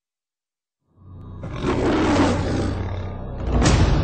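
Film-trailer sound design: about a second in, a low drone rises under a swelling, rushing roar, and a sharp hit lands near the end.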